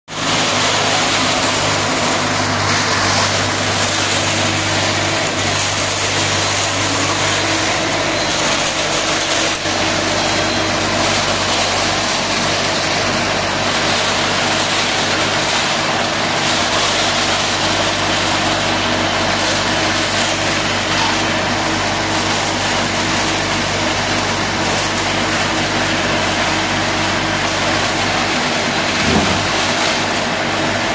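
Diesel engine of an Aimix AS-1.8 self-loading concrete mixer running steadily at an even pitch, with a brief swell near the end.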